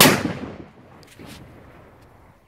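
A single loud bang of a Pyrostar Bomberos 2.0 Spanish firecracker exploding, sharp at the onset and dying away in an echo over about half a second.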